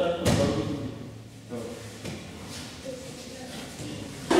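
One sharp thud on a judo mat about a quarter second in, ringing briefly in a large hall.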